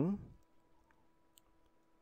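A man's voice trails off in the first half-second, then near silence with a faint steady hum and a couple of faint clicks, about a second and a second and a half in.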